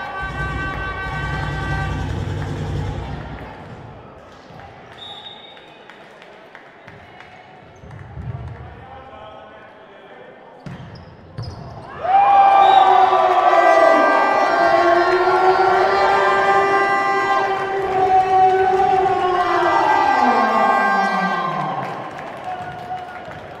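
Volleyball play in an indoor hall, the ball being struck during a rally. About twelve seconds in, as the point ends, loud horn-like tones from the stands start up and slide up and down in pitch, falling away near the end.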